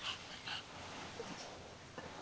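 A baby making two short, faint high-pitched squeaks, one at the start and one about half a second in.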